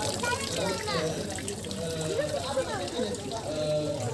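Background voices of people, children among them, talking, with a thin stream of water trickling from a pipe tap.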